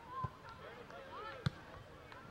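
A soccer ball kicked with a dull thump about a quarter second in, then a sharper knock a little over a second later, over faint distant voices of players and spectators.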